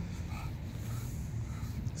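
English bulldog panting faintly over a low, steady rumble.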